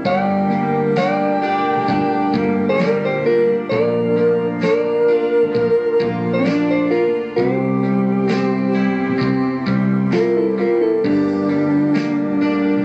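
Instrumental guitar break of a slow rock ballad: a lead guitar holds long notes, sliding between some of them, over plucked guitar accompaniment.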